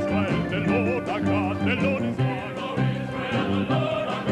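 A male cantor singing in a wide operatic vibrato over held low notes from a Moog modular synthesizer.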